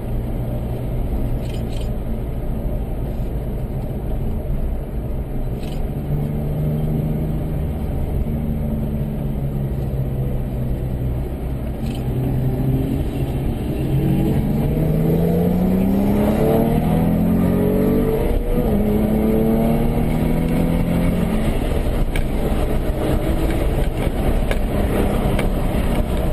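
Porsche engine heard from inside the car, running steadily at moderate speed, then accelerating from about halfway. The pitch rises, dropping back a couple of times at upshifts, and grows louder.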